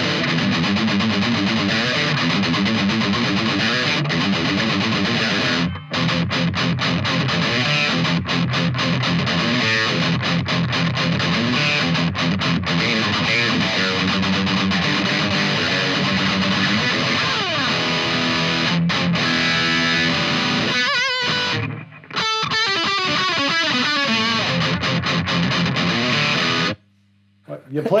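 High-gain distorted electric guitar riffs from a Jackson guitar through a Peavey 6505 head and 2x12 cabinet. It is recorded through a Shure SM57 paired with an SE VR2 Voodoo ribbon mic, with the ribbon full up and the 57 about four or five dB lower. The playing breaks briefly about six seconds in, has wavering, bent notes a few seconds from the end, and stops just before the end.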